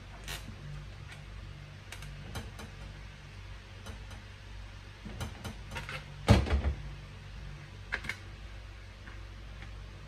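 Kitchenware being handled while blended juice is moved into a straining mesh: scattered clicks and knocks, with a cluster of them and the loudest thump about six seconds in, over a steady low hum.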